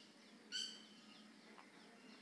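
Near silence with a short, high bird call about half a second in and a few faint chirps after it.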